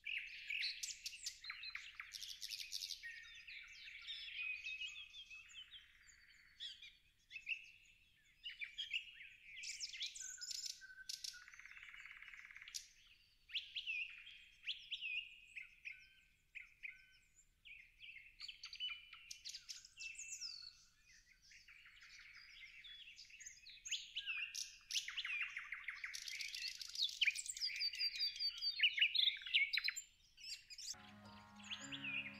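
Songbirds chirping and singing: many short calls, whistles and rapid trills overlapping, busiest and loudest in the last few seconds.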